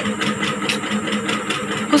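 A steady low mechanical hum with a regular pulsing beat, like a small motor or engine running.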